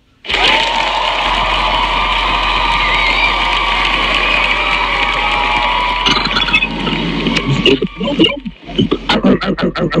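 The sound of a pie-eating challenge video being played back starts suddenly, loud and dense, with voices in it. Near the end it breaks into a quick run of evenly spaced beats.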